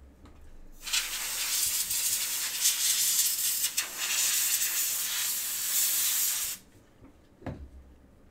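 A loud, steady hiss lasting about five and a half seconds, starting and cutting off abruptly, followed by a soft knock.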